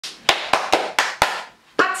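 Five quick hand claps in a row, about four a second, followed by a short pause before a voice starts near the end.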